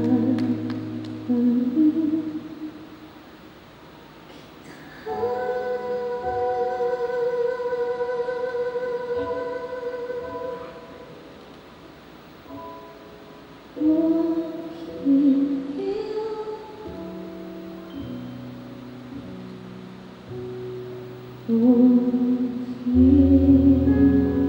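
A woman singing a slow, quiet ballad into a microphone over soft sustained accompaniment, with long held notes and quieter gaps between phrases.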